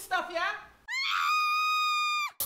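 A person yelling in a high voice, then, after a brief break about a second in, one long high-pitched scream held at a steady pitch.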